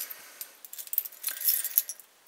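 A bunch of metal keys on a key ring jangling and clinking as they are handled and sorted through, with a busier flurry of jingles just past the middle.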